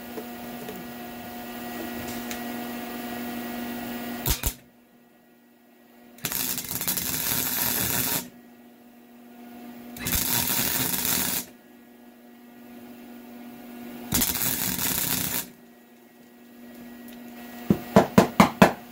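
Wire-feed (MIG) welder arcing on the stub of a broken exhaust manifold bolt, in three crackling bursts of one to two seconds each with pauses between. The bead is being built up on the snapped bolt so it can be turned out. A steady hum and a click come before the first burst.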